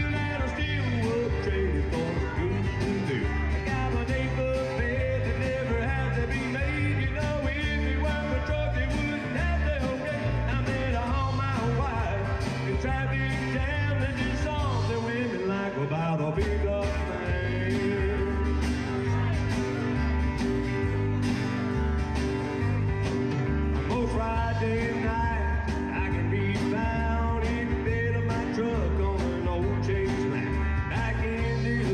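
Live rock band playing with drum kit, electric guitars and bass, a steady beat running throughout.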